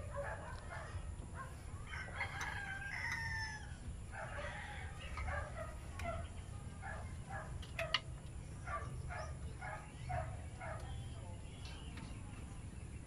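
Bird calls in the background: one drawn-out call with a falling pitch about two seconds in, then a run of short calls at about two a second, over a steady low hum.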